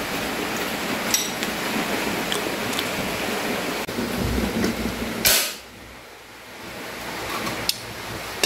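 Portable butane gas stove burner hissing steadily under a pot, then a sharp click of the control knob about five seconds in as the flame is shut off, and the hiss stops suddenly. A few bumps of the pot being handled come just before.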